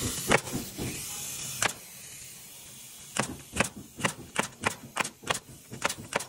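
Pneumatic coil nailer firing nails to fasten metal roof straps to the sheathing: two single shots in the first couple of seconds, then from about three seconds in a rapid run of sharp shots, about three a second.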